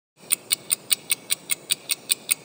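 Channel logo intro sound: sharp, even ticks about five a second, like a fast clock, over a steady low background noise.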